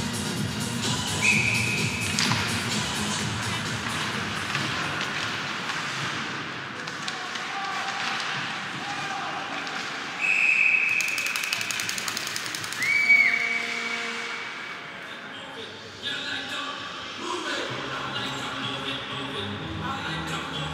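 Ice hockey arena sound: skates and sticks on the ice under crowd murmur, cut by short, shrill referee's whistle blasts about a second in and again around ten and thirteen seconds in, stopping play. Arena music comes up near the end.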